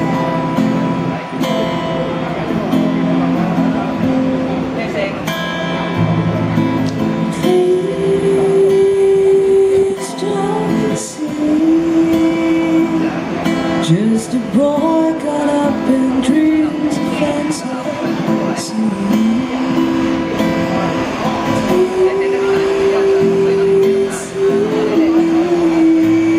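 Amplified guitar playing and a woman singing into a microphone: the guitar runs alone at first, and about seven seconds in her voice comes in with long held notes.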